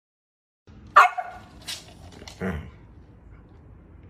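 A dog barks twice: a sharp, loud bark about a second in, with the pitch dropping, and a second bark about a second and a half later.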